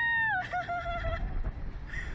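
A young woman's high-pitched squeal on a slingshot ride, held and then falling away about half a second in, followed by a lower, wavering cry. A low rumble runs underneath.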